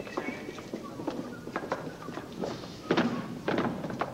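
Footsteps and scattered knocks on a stage floor, with two louder thumps about three seconds in, and faint voices underneath.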